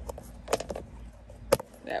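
Two sharp clicks, the second and louder about a second and a half in, as a bamboo stake is fitted behind a green metal tomato cage's crossbar.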